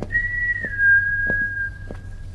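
Whistling: a short higher note that drops into a longer, lower held note. Soft knocks come at an even pace, about every two-thirds of a second.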